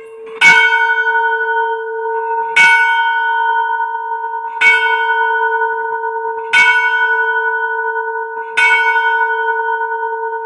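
A bell struck about every two seconds, five times, each strike loud and ringing on with a steady hum into the next.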